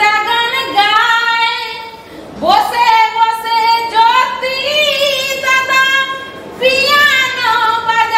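A woman singing a Bengali patua scroll song (pater gaan), the chant that accompanies a painted patachitra scroll. She sings in long held notes with sliding pitch, with short breaks about two seconds in and again past six seconds.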